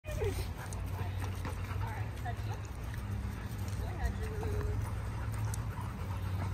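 Dogs making short, scattered whines over a steady low hum.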